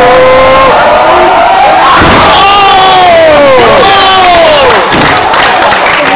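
Live wrestling crowd shouting and cheering, very loud, many voices overlapping with long falling yells.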